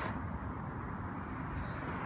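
Steady outdoor background noise: an even rumble and hiss with no distinct events.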